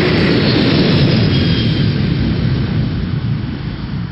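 Loud, dense rushing rumble from the soundtrack, fading away over the last second or so.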